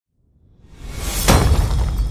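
Logo-intro sound effect: a swelling whoosh that builds into a sharp glass-shatter hit just over a second in, followed by a deep low rumble.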